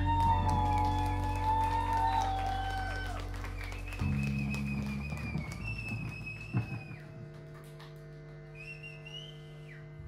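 Electric guitar and bass ringing out through amplifiers, with high whistling guitar feedback tones that hold and shift pitch in steps over sustained bass notes, the whole sound gradually fading. A single sharp click comes about six and a half seconds in.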